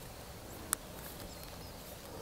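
Quiet handling of fishing line and a hook as fingers tie a knot, with one short sharp click about three-quarters of a second in.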